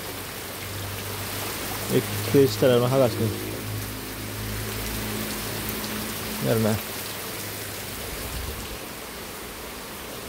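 Heavy rain falling steadily, an even hiss of drops on the ground and roofs.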